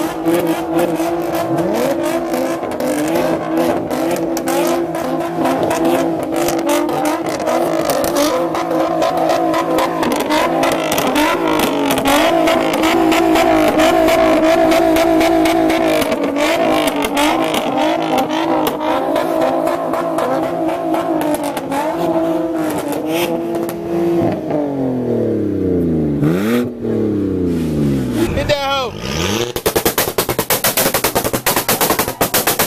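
Car engine revved and held at a steady high pitch for over twenty seconds, with many sharp cracks through it. Near the end the revs drop and climb again in quick sweeps, several times.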